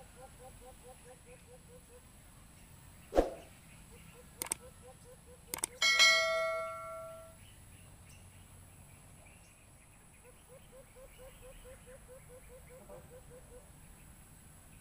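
A dove call repeated as runs of quick low notes, about six a second, played as a lure over a Bluetooth speaker. About three seconds in there is a sharp knock, then two short clicks. About six seconds in comes the loudest sound, a metallic clang that rings and dies away over about a second and a half.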